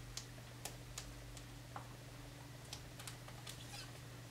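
Faint, scattered light clicks and taps of hands handling a photo and paper cards in a plastic page-protector album, about ten small ticks spread unevenly, over a low steady hum.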